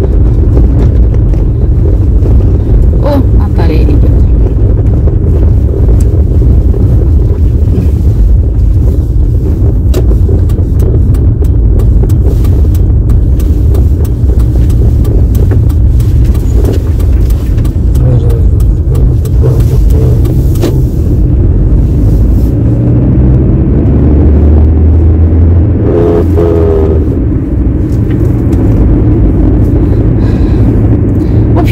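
Car interior noise while driving: a loud, steady low rumble of engine and tyres on the road.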